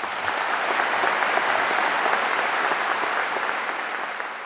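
Audience applauding steadily, an even clatter of many hands that eases off a little near the end.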